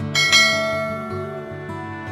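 A bright bell chime strikes a few tenths of a second in and slowly dies away, the notification-bell sound effect of a subscribe-button animation, over soft acoustic guitar background music.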